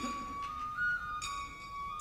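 Matsuri-bayashi music: a shinobue bamboo flute holds a high note that steps up and back down again about a second in, with the tail of a taiko drum stroke at the very start.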